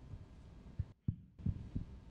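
Handling noise from a microphone being passed to a questioner: a few soft, low thumps over faint room hum, with the sound cutting out briefly about a second in.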